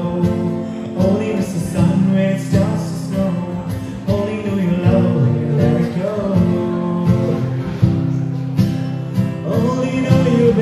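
A man singing a cover song while strumming a steel-string acoustic guitar, voice and guitar together.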